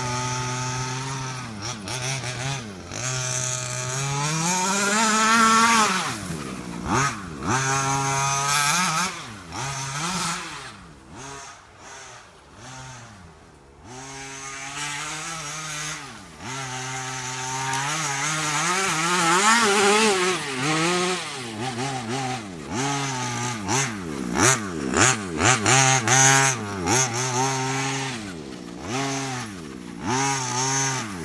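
Small two-stroke gas engine of a 1/5-scale Maverick Blackout MT RC monster truck, fitted with a DDM Racing tuned pipe, revving up and down again and again as it drives, settling to a steady idle between bursts. It grows quieter for a few seconds around the middle, then revs hard again.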